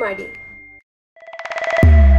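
Outro sound design: the tail of a voice-over with a bell-like ding ringing under it and fading out, a brief gap, then a quickening run of ticks that swells into a loud, deep bass hit near the end, starting the logo music.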